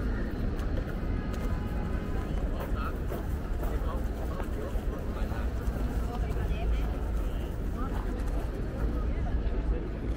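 Busy city-plaza ambience: background chatter of people nearby and faint music over a steady low rumble, with no single sound standing out.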